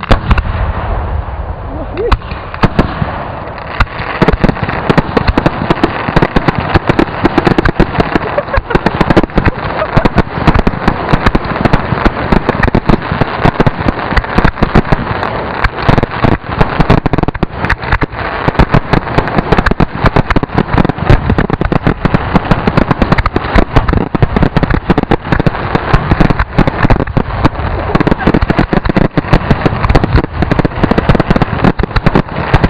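Fireworks display in a dense barrage: a rapid, unbroken run of bangs and crackles, many a second, beginning abruptly and staying loud throughout.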